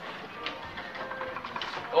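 Faint, indistinct background voices with music playing quietly.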